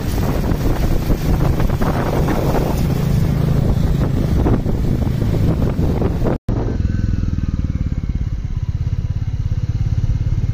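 Motorcycle engine running while riding, with wind rushing over the microphone. About six seconds in the sound cuts out for a moment and comes back as a steadier, evenly pulsing engine note with much less wind.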